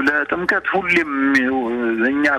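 Speech only: a person talking, with one long drawn-out vowel in the second half.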